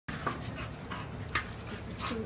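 A dog panting while it noses and pushes a large plastic ball around, with a few short sharp knocks.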